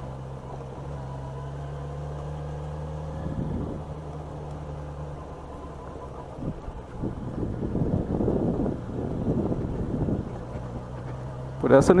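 Yamaha XJ6 inline-four engine running steadily at low speed for about the first five seconds. From about six seconds in, irregular rumbling and knocks come through as the bike rides over a potholed dirt road.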